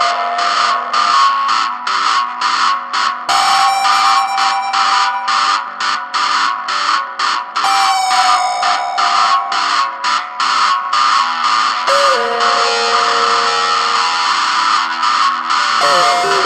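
Instrumental music: effects-laden electric guitar playing sliding notes over a fast, evenly chopped pulsing texture of about three to four pulses a second.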